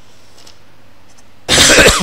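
A man clearing his throat close into a microphone: one loud, harsh rasp about a second and a half in, ending in a falling voiced tail. Before it there is only low steady room hiss.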